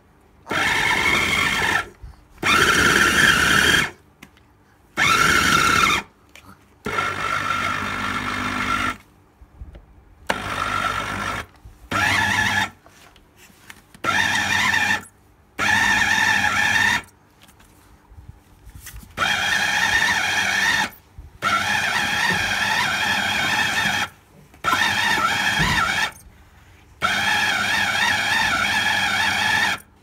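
Electric fufu blender's motor run in short pulses, about a dozen bursts of one to three seconds each with short pauses between, a steady whine in each burst as it mixes the fufu dough.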